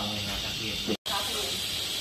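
Oil sizzling in a wok as food is stir-fried over a gas burner: a steady hiss, broken off by a brief dropout about halfway through.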